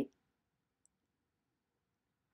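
Near silence in a small room, with the tail of a woman's word at the very start and one faint, short high click a little under a second in.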